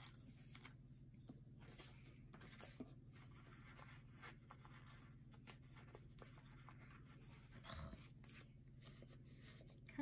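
Near silence: faint rustles and light taps of paper sticker sheets being handled on a desk, over a low steady hum.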